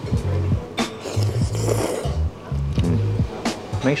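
Background music with a deep bass line pulsing on and off about twice a second.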